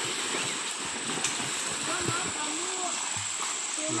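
Steady wash of water and splashing from children bathing in a small, shallow stream, with faint children's voices in the background.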